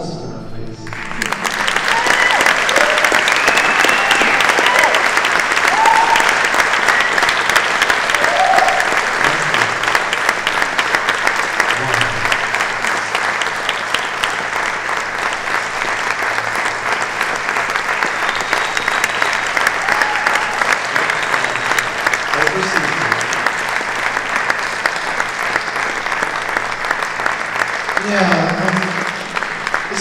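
A theatre audience applauding, a dense wash of clapping that swells in about a second after the start and tapers near the end, with a few scattered whoops in the first several seconds.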